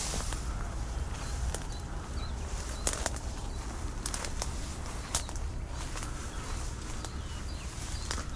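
Footsteps pushing through thick weeds and brush, leaves and stems rustling against the body and phone, with a few sharp snaps of twigs scattered through.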